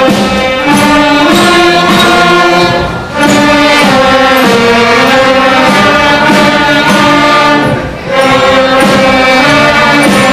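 Student concert band of woodwinds and brass playing held notes in chords. The sound dips briefly between phrases about three and eight seconds in.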